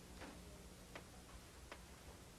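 Near silence in a quiet room, broken by three faint, short taps at uneven intervals.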